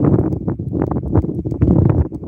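Wind buffeting the microphone, with irregular knocks and rustles from handling.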